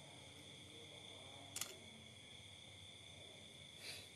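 Near silence with a steady faint high-pitched hum, broken once by a single short click about a second and a half in.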